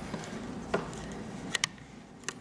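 Small metal clicks and handling noise as the pressure plate is slotted back into a Bolex cine camera's film gate: one click about three-quarters of a second in, then two quick clicks close together near the end.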